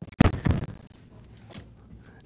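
A single sharp thump from the third-row seat of a 2020 Kia Sorento as it is folded down flat, followed by a brief rattle.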